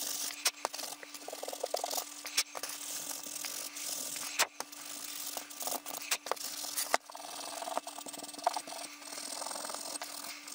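Scratchy rubbing of a small abrasive worked by hand over a patinated silicon bronze skull casting, scrubbing back the dark patina on the raised areas to bring out highlights. The rubbing runs steadily, with several sharp clicks as the casting and tool knock against the bench.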